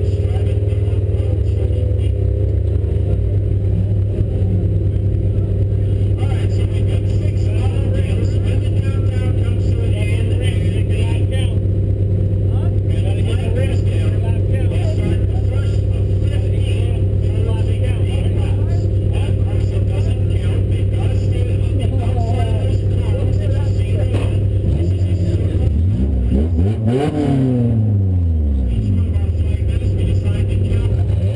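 Demolition-race car engine idling steadily, heard from inside the gutted cabin, then revving up and back down a few times near the end.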